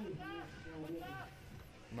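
A man's voice talking, with a quieter lull near the end.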